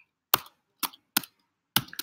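Computer keyboard keys struck one at a time, about five separate clicks spread unevenly across two seconds.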